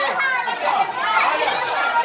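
Indistinct chatter of children's voices, several people talking over one another.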